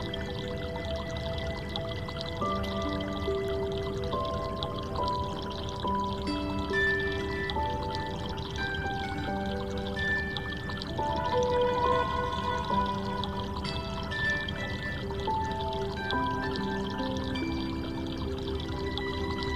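Slow, calm instrumental background music of long held notes changing one after another, over a steady water-like rushing noise.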